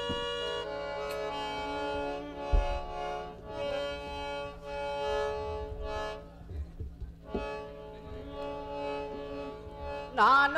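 Harmonium playing a melody in long held notes, with a few low drum strokes.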